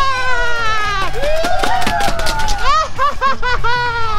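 A high-pitched voice in long, sliding notes that waver quickly in the second half.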